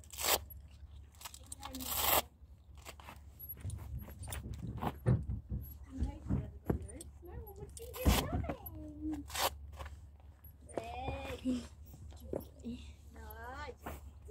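Velcro fastenings on a horse's brushing boots ripped open twice near the start as the boots come off, then a few sharp knocks and rasps of tack being handled, with faint voices in the background.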